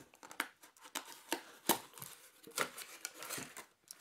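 Corrugated cardboard mug packaging being opened by hand: irregular scrapes, rustles and clicks as the flaps are pulled back and the box is worked open.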